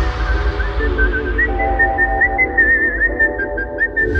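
Electronic dance track in a breakdown: a whistled melody with quick warbling runs over sustained synth chords and a steady deep bass, with the drums dropped out.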